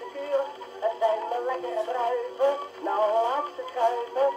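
A portable gramophone playing a shellac 78 record of an old song through its acoustic soundbox, with a thin sound and no bass.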